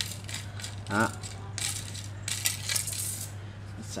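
Shimano carbon ikada fishing rod being handled: a run of light clicks and scrapes from about one and a half to three seconds in, as the thin tip section is drawn out of the hollow handle.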